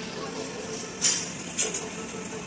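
Restaurant background hiss with two short, sharp clinks of stainless-steel tableware, one about a second in and another about half a second later.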